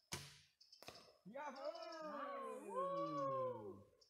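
Two sharp clicks, then several people's voices overlapping in long, wordless, sliding tones for nearly three seconds, mostly falling in pitch.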